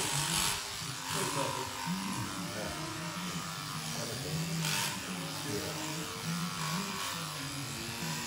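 Electric alpaca shears running through a cria's fleece around the head. A low hum wavers in pitch throughout, with short bursts of hiss at the start and about four and a half seconds in.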